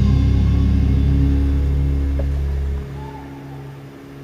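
Live concert music from a band in an arena: a loud, deep sustained bass drone under held tones, fading away about three seconds in.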